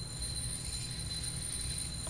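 High-pitched, steady squeal as fingers press against a small spinning disk on a motor shaft to brake it to a stop, over a low hum.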